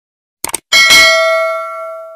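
Subscribe-animation sound effect: a quick double click about half a second in, then a bright bell ding that rings and slowly fades.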